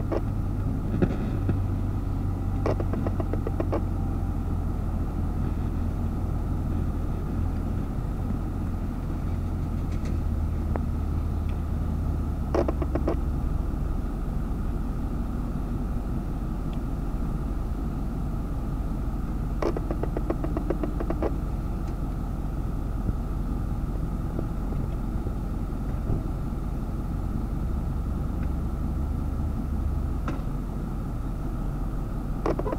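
Large crawler crane's diesel engine running steadily as a low drone, its pitch shifting slightly about twelve seconds in. Short bursts of rapid clicking come several times over it.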